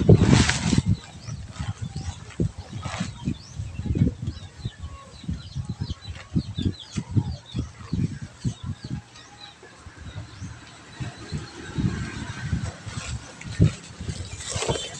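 Irregular low thumps and knocks from a handheld phone being moved about, with a louder burst right at the start. Chickens and small birds chirp faintly in the background.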